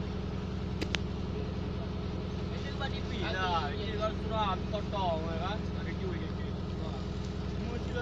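Fishing boat's engine running with a steady, even low hum.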